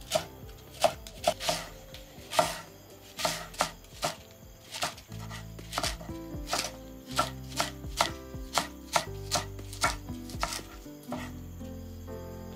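Chef's knife chopping leeks on a wooden cutting board: a quick, irregular run of sharp knife strikes against the board, about two a second, stopping near the end.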